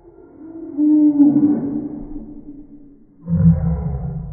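A girl's long, drawn-out wordless vocal sound, held and then dipping slightly, followed near the end by a second, lower one that starts abruptly.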